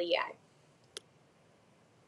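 A woman's voice ends a word, then a single short, sharp click about a second in.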